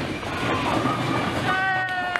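Bowling ball rolling down a wooden lane, a steady rumble. A steady high-pitched tone joins about three-quarters of the way in.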